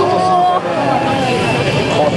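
2006 Honda CBR600RR's inline-four engine revving up and down, its pitch rising and falling as the bike is swung through tight, slow turns.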